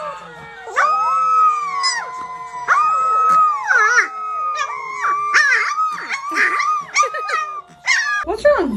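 A litter of young puppies howling together: several high, wavering howls overlap, each held for a second or more, rising and falling in pitch.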